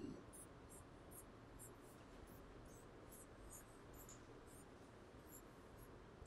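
Faint squeaking of a marker pen drawing on a whiteboard: a string of short, irregular high strokes.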